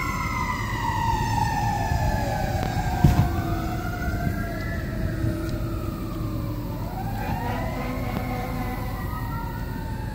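Two or more emergency-vehicle sirens wail at once, their pitches slowly rising and falling out of step with each other over a low rumble. There is a single thump about three seconds in.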